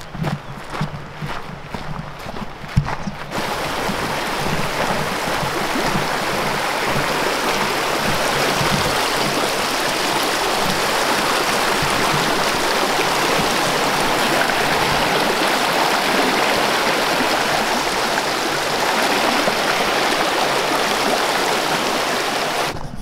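Footsteps on a dirt trail for about three seconds, then a shallow, rocky mountain stream rushing over stones: a steady wash of running water.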